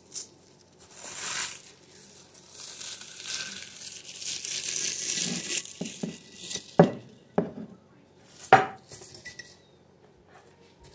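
Dried plantain leaves crinkling and crumbling as they are torn up by hand, in two rustling stretches. Three sharp knocks and clinks follow in the second half.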